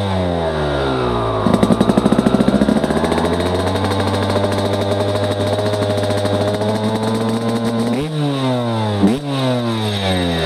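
Two-stroke engine of a 2017 Yamaha YZ250X dirt bike running: revs fall at first, then rise and hold steady at a higher speed, with two quick throttle blips near the end.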